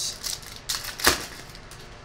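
Stiff trading cards being flipped through by hand: a few short flicks and slides of card against card, the sharpest about a second in.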